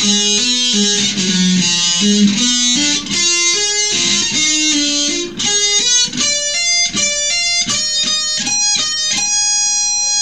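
Jackson electric guitar playing a fast lead run of hammered-on and pulled-off minor thirds that climbs step by step up the neck, ending on one long held high note about nine seconds in.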